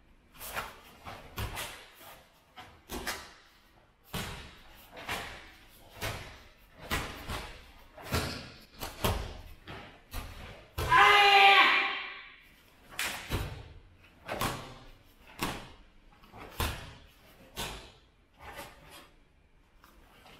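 A karate kata (Sochin) performed barefoot on foam mats: about twenty sharp cracks of the gi snapping and feet landing with the strikes, blocks and stances, each echoing in a large hall. About eleven seconds in comes a loud kiai shout lasting about a second.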